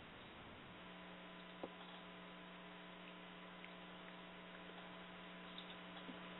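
Near silence on the broadcast line: a faint steady electrical hum with light hiss that sets in about a second in, and one faint click soon after.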